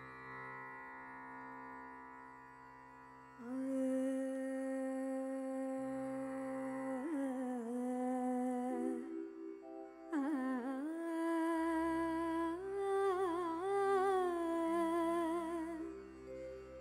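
A woman singing in Carnatic style over steady instrumental accompaniment: a few seconds of accompaniment alone, then her voice comes in with long held notes, breaking later into wavering, ornamented turns.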